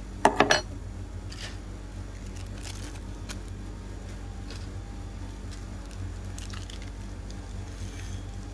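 Handling noises from plastic model-stand parts and packaging: a quick cluster of loud crinkly clicks just after the start, then faint scattered rustles and clicks over a steady low hum.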